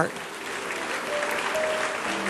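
A large congregation applauding, an even clatter of many hands, with a few soft held notes of background music underneath.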